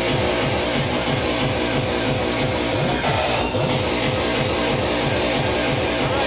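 Loud hardcore dance music from a DJ set, with a fast, steady kick drum of about three beats a second, recorded from within a club.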